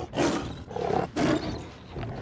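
Bengal tiger roaring at close range, three rough roars in quick succession that ease off near the end.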